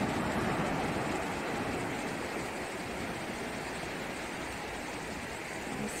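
Ocean surf washing onto a sandy beach: a steady rush of wave noise that eases slightly toward the end.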